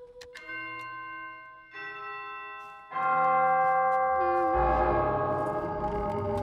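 A doorbell button clicks, then the doorbell rings in three slow chime notes that ring on and pile up, the third much louder than the first two. A deep rumble comes in under the ringing about four and a half seconds in.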